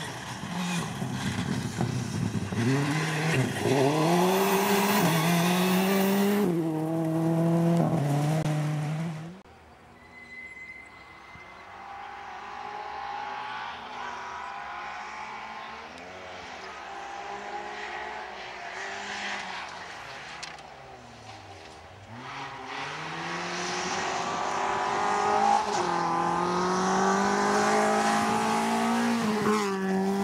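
Rally car engine accelerating hard on a gravel stage, rising in pitch and dropping at each of several quick upshifts, then cut off abruptly about nine seconds in. Another rally car is then heard from afar, its engine rising and falling through the gears as it approaches, growing loud over the last several seconds.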